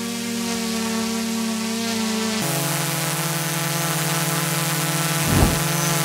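Small quadcopter drone hovering with a steady propeller hum: the DJI Mini 3 Pro, then, after an abrupt switch a little over two seconds in, a second drone with a different-pitched hum, played side by side to compare their noise levels. A short whoosh near the end.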